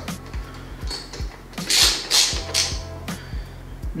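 Background music with a steady beat. Under it, a hand ratchet clicks about halfway through as a bolt is tightened in the engine bay.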